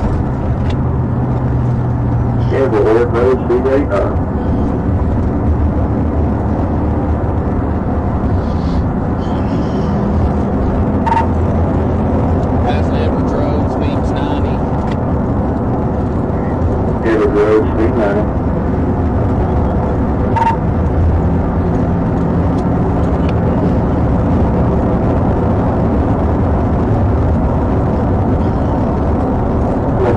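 Steady cabin noise of a police patrol car driven at about 90 to 100 mph: engine drone with tire and wind noise. Two short bursts of muffled voices come through, a few seconds in and about halfway.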